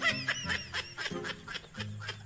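Short bursts of snickering laughter over the crackle and crinkle of gift-wrapping paper as a small box is unwrapped.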